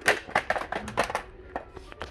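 Plastic blister packs of die-cast toy cars clacking and rattling against each other as they are pushed aside and rearranged by hand: a quick run of sharp clicks through the first second or so, then quieter.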